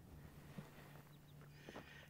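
Near silence: faint outdoor background hiss with a couple of soft clicks.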